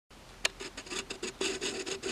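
Writing on paper: a single sharp tap about half a second in, then a quick run of short scratchy strokes that crowd closer together near the end.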